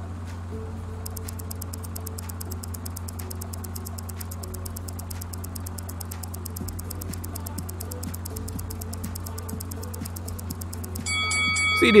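Timer sound effect: a stopwatch ticking fast and evenly, several ticks a second, over a steady low hum. A bell-like chime sounds about eleven seconds in, marking the end of the countdown.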